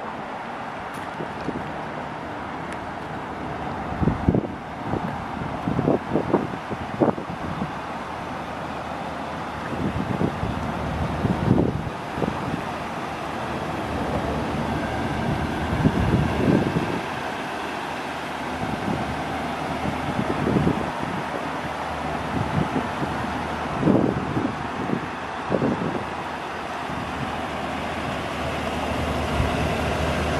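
Steady outdoor road-traffic noise, with repeated gusts of wind buffeting the microphone.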